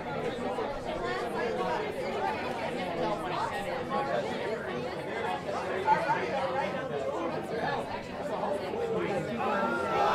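Crowd of children chattering and calling out, many voices overlapping, growing louder near the end.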